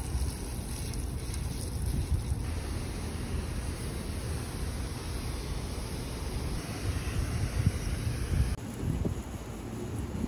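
Garden hose spray nozzle hissing as it sprays water over potted plants, under heavy wind rumble buffeting the microphone.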